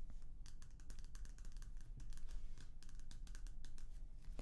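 Fingers tapping on a magazine's paper cover: quick, irregular light taps, several a second.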